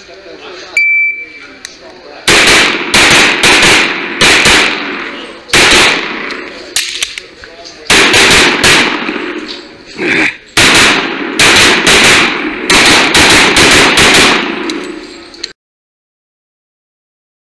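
Shot timer start beep, then a semi-automatic pistol firing about twenty shots, mostly in quick pairs with short pauses between strings, echoing in an indoor range. The sound cuts off suddenly near the end.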